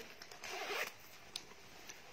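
A jacket's front zipper being pulled open in one short rasp of about half a second, followed by a faint click.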